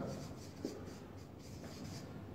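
Marker pen writing on flip-chart paper: a run of faint, short scratching strokes.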